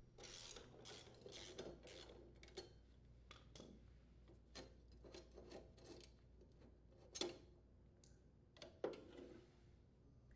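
Faint clicking and scraping of a socket wrench loosening the blade bolts on a Honda HRR2167VXA mower and the steel blade being worked off its hub. Irregular small clicks throughout, with two sharper clicks about seven and nine seconds in.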